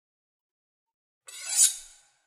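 About a second of silence, then a short, airy, mostly high-pitched whoosh that swells and fades within under a second: a transition sound effect.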